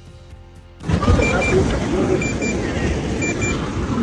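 Wind rumbling on an outdoor microphone starts about a second in. Over it, short high electronic beeps come in pairs about once a second: the drone controller's alarm for a critically low battery, with the drone set on automatic landing.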